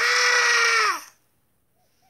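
A man's loud, high-pitched yell or wail, held for about a second, its pitch dropping slightly as it ends.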